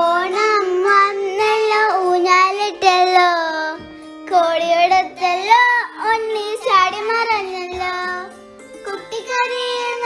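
A child singing a melodic, ornamented song with long gliding notes over steady instrumental accompaniment; the voice breaks off briefly about four seconds in and again near eight seconds.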